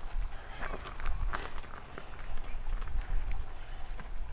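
Soft handling sounds and light taps as raw fish fillets are laid and shifted by hand on a grill mat over a hot kamado grill, over a steady low rumble.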